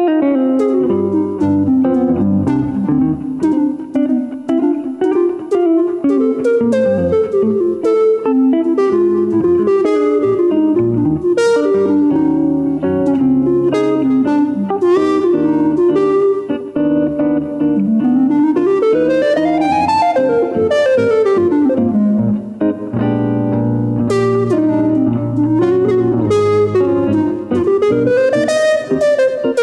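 Live instrumental jazz-tinged music. A hollow-body electric guitar is picked over a sustained wind-instrument melody line, which slides smoothly up and back down once, around twenty seconds in.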